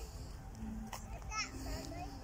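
Children's voices and background chatter from people around, with a high child's call about one and a half seconds in, over a low rumble.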